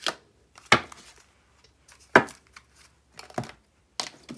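Tarot cards being slapped down onto a tabletop one at a time: four sharp snaps spread across a few seconds.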